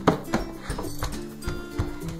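Upbeat background music over a run of irregular knocks of hands and knees on a hardwood floor as a person moves along it hunched low.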